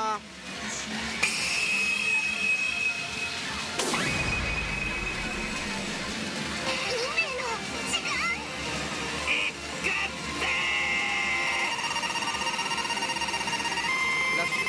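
Pachinko machine's electronic effects and music as it goes into a jackpot: held beeping tones, one sweeping effect about four seconds in and a rising tone near the end, over a steady din that PANN files under water, typical of steel balls rattling through the machine.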